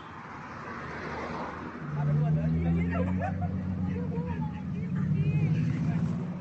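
A vehicle engine idling close by: a steady low hum that comes in about two seconds in and holds, with people's voices chattering over it.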